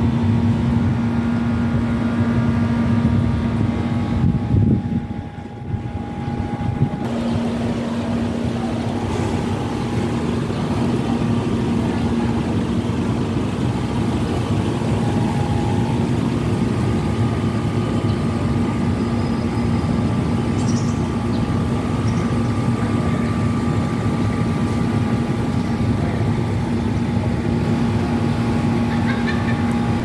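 Steady low rumble, the kind wind makes on the microphone, with a steady machine hum running through it; the level dips briefly about five seconds in.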